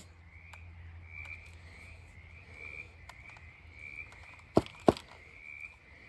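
Faint, high, short animal calls repeating about twice a second, with two sharp knocks close together about four and a half seconds in.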